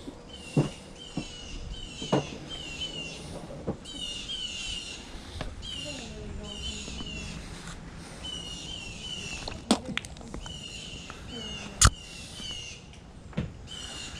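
A bird calling over and over in short falling chirps, about two a second, with a few sharp knocks; the loudest knock comes near the end.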